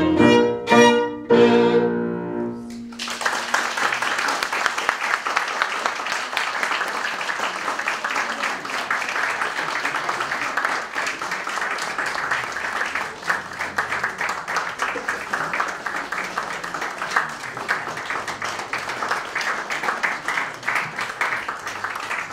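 Violin and piano play the closing notes of a piece, ending about two and a half seconds in. An audience then applauds steadily for the rest of the time.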